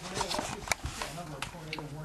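Faint, muffled voice from a television in the background, broken by several sharp clicks and knocks as the camera is handled.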